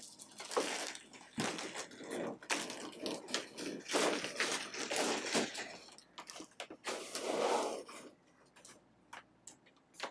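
Foam packing blocks rubbing, squeaking and scraping as a heavy quilting machine is worked free of them and lifted out, with scattered knocks. The handling noise dies down for the last couple of seconds, leaving a few clicks.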